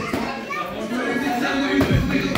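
Indistinct voices and chatter over background music, with a boxing glove smacking into a focus mitt near the end.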